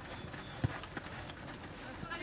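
Soccer ball kicks on a dirt pitch: a sharp thud about two-thirds of a second in and a softer one about a second in, over steady outdoor background noise.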